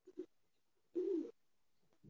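Pigeon cooing faintly, picked up by a participant's microphone on the call: a short double note at the start, then one longer coo with a bending pitch about a second in.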